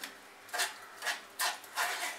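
A black spatula scraping blended tomato pulp against a stainless steel mesh strainer, pushing the soup through: three short scraping strokes, the last two close together.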